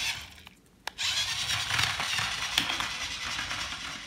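A small battery-powered remote control toy car running, its motor and plastic gears whirring steadily as it drives across the floor. A short click comes just before the whir starts, about a second in.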